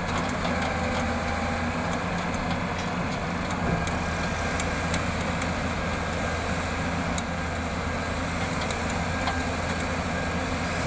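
Diesel engine of a Hyundai Robex 200W-7 wheeled excavator running steadily while it loads a dump truck, with scattered short sharp ticks over it.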